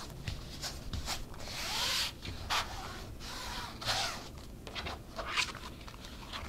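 Fingers rubbing and smoothing along the adhesive tape on a pamphlet binder's spine, pressing out air bubbles: a series of short brushing strokes with one longer sweep about two seconds in.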